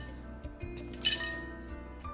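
A plate clinks loudly once, about a second in, as it is set down from a serving tray onto a table, with a couple of lighter taps of crockery before it. Background music plays steadily underneath.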